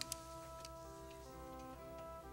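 Soft background music of sustained, held chords that shift a couple of times, with two quick clicks right at the start.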